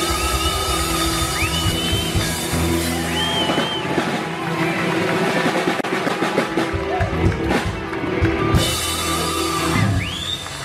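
Filipino rock music: drum kit and guitars playing steadily, with a high melodic line that slides and bends up and down in pitch.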